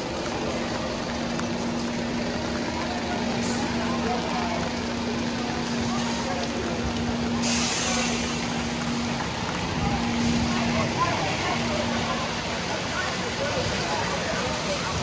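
Steady hiss of heavy rain on a wet city street, with a red double-decker bus's engine running alongside as a steady hum that breaks up and stops near the end. About halfway through comes a short, sharp hiss of air, typical of the bus's air brakes.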